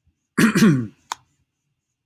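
A man clears his throat once, a short rasping sound falling in pitch, followed a moment later by a single sharp click.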